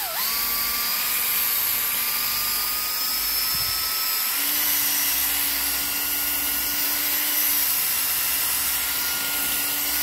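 Electric power drill running steadily while its twist bit drills out the rivet holding a die-cast toy truck's baseplate, the motor's whine creeping slowly higher in pitch.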